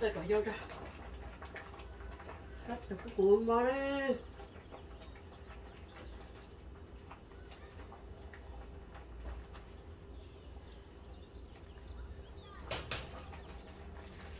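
A person's voice: a short vocal sound at the start, then a drawn-out vocal sound about three seconds in whose pitch rises and then falls, over a steady low hum.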